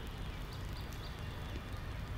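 Low, steady background ambience of a cricket ground, with a few faint short high-pitched tones in the first second.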